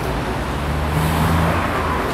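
Road traffic: a motor vehicle's engine running nearby, a steady low hum that swells slightly about a second in.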